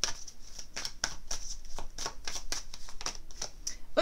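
A deck of tarot cards being shuffled by hand: a quick, irregular patter of card slaps and riffles, about five or six a second.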